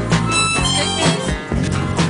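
Harmonica playing a short run of held notes over a song with guitar and a steady beat.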